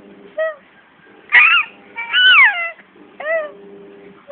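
Five-month-old baby cooing and squealing in four short high-pitched calls, the longest one near the middle gliding down in pitch.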